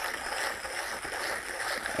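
Yihua SD-1 double-burr hand grinder being cranked steadily, its burrs crushing light-roast coffee beans at the finest, espresso-fine setting. The grinding is even and nice and quiet.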